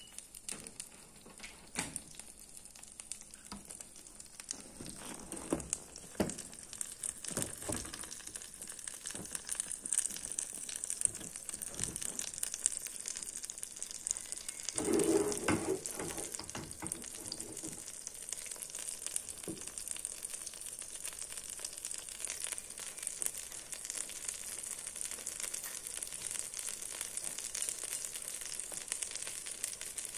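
Sweet-potato batter frying in a skillet on a gas stove: a steady, high sizzle with light crackling throughout. A brief louder knock or handling noise comes about halfway through.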